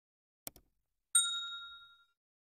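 A short mouse-click sound effect, then a single bell ding that starts suddenly and fades away over about a second: the notification-bell sound effect of a subscribe-button animation, as the bell is clicked.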